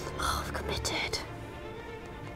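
A breathy sigh, with a few light wooden knocks as a giant Jenga block is nudged, over background music with a violin.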